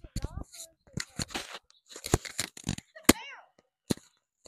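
A plastic wiffle ball struck off the end of the bat: one sharp crack about three seconds in, amid close rustling and knocks from a body-worn microphone and a short exclamation just after the hit.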